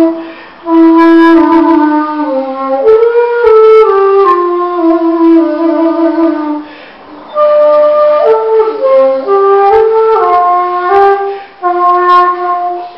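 Chinese wooden flute playing a slow solo melody of held notes, with pitch bends sliding between some of them. There are short pauses about half a second in, near seven seconds, and just before the end.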